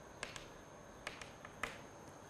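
Chalk tapping and scratching on a chalkboard while writing: a handful of short, sharp, faint clicks, irregularly spaced.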